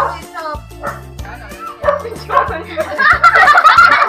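Background music with a bass line moving in steady notes, under a group of young people laughing and shrieking together, building to its loudest in the last second or so.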